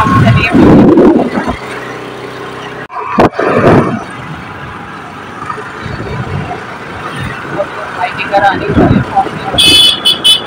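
Road traffic noise on a town street, with a vehicle horn tooting near the end.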